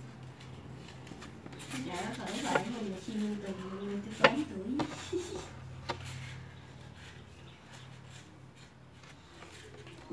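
A voice speaking faintly in the background over a steady low hum, with a couple of sharp clicks from string and leaves being handled.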